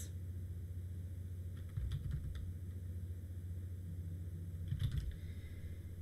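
A few faint computer-keyboard keystrokes in two short clusters, about two seconds in and again near five seconds, over a steady low hum.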